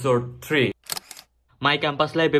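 A man talking, broken about a second in by a short, sharp click that is followed by a silent gap. The talking starts again near the end.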